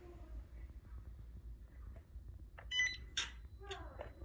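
Quiet low hum, then a quick cluster of high electronic beeps about two and a half seconds in, from the radio-control gear as the Spektrum DXs transmitter binds to the plane's receiver.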